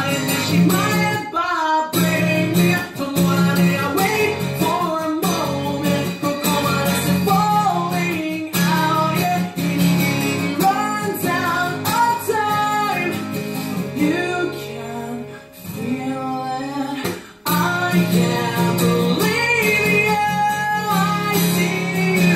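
Steel-string acoustic guitar strummed in chords with a male voice singing the melody over it, with short breaks in the strumming about a second and a half in and again near the end.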